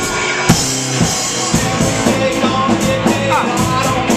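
Live rock band playing: a drum kit with steady cymbal strokes and snare and bass drum hits over electric guitar, with one loud crash about half a second in.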